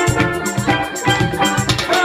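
Live band playing an instrumental passage with no singing: a steel pan carries the melody over a steady drum beat and keyboard.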